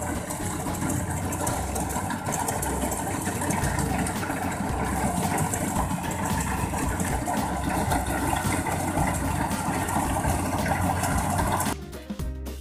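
Kubota combine harvester running steadily while it cuts a field of rice, a continuous engine hum with machinery noise.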